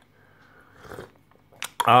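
Faint mouth sounds of a man sipping coffee, followed by two short clicks and then a satisfied "ah" at the very end.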